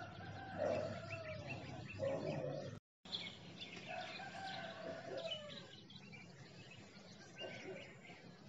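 A rooster crowing, with small birds chirping. The sound cuts out completely for a moment just before three seconds in.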